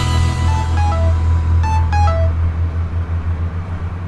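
Steady low road and engine drone heard from inside a moving car's cabin, with a short three-note falling phone notification chime sounding twice, about a second apart, in the first half.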